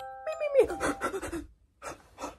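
A person panting in a quick run of short, heavy breaths, startled awake from a bad dream. Bright chime-like music tones fade out about half a second in.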